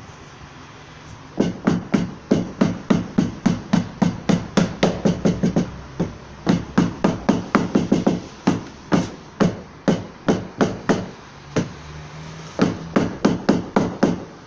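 A cloth-wrapped hand knocking rapidly and evenly, about three strikes a second, on a car door's outer window trim strip, seating the new scraper seal. The knocks come in three runs with short breaks.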